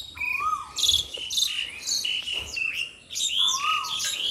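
Several birds chirping and calling over one another: quick high chirps and trills, and a lower whistled note that rises and falls, heard once near the start and again about three seconds in.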